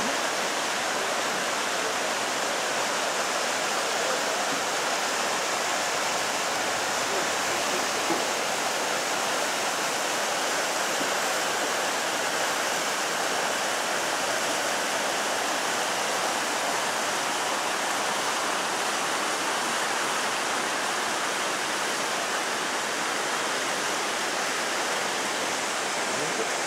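The Horcones River rushing over boulders and small waterfalls: a steady, unbroken rush of water.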